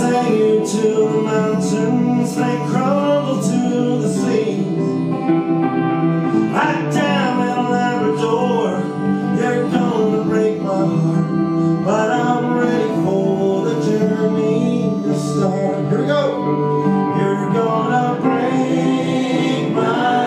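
Live roots band playing an instrumental passage: harmonica lead over strummed guitars, with a steady rhythm.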